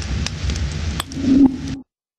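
A few sharp clicks over a steady background hiss and hum. The sound cuts off abruptly to silence near the end.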